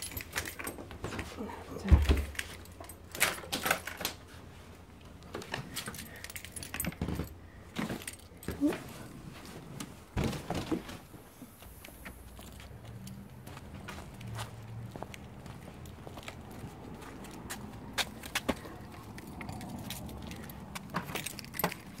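A bunch of keys jangling and clinking irregularly in hand, with a heavy thump about two seconds in.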